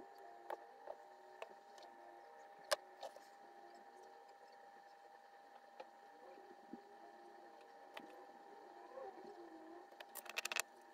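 Near silence with a faint steady hum, broken by a handful of light clicks and taps as a perforated circuit board and metal tweezers are handled on a silicone soldering mat.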